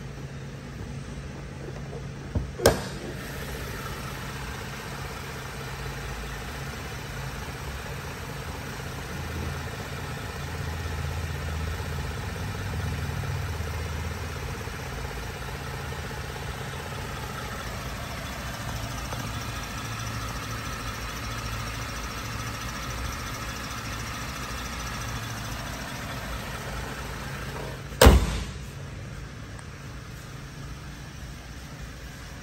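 2014 Chevrolet Camaro's 3.6-litre V6 idling steadily under the raised hood. A sharp double knock comes a couple of seconds in, and near the end the hood is slammed shut with a loud thump.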